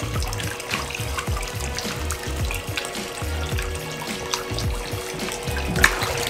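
Background music with a steady bass beat over water pouring steadily from a filter outlet into a fish tank. A brief sharp knock comes just before the end.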